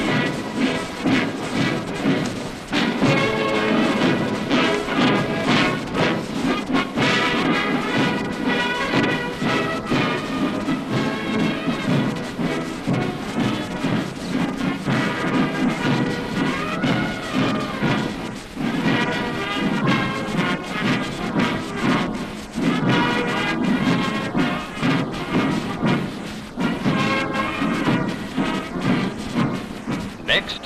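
Military band music playing throughout, at a steady full level.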